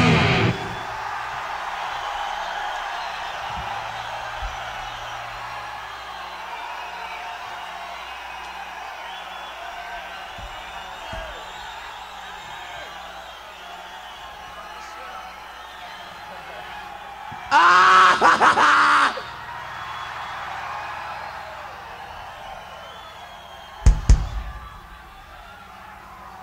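A band's last loud chord cuts off, then a concert crowd cheers and yells, slowly dying down over a low steady hum. One loud yell stands out about eighteen seconds in, and there is a sharp thump near the end.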